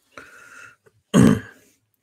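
A man clearing his throat: a softer throaty sound first, then one short, loud clearing about a second in.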